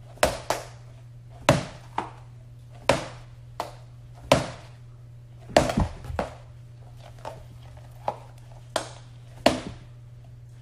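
Small balls dropped one after another into a box, each landing with a sharp knock and a short echo, about fifteen times at uneven intervals, over a steady low hum.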